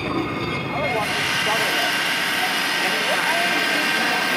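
Light-and-sound-show soundtrack over loudspeakers: a steady rushing whoosh starts about a second in and holds as the projection begins, over crowd chatter.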